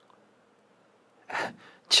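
Near silence, then a short, sharp breath from a man close to a handheld microphone a little past halfway through.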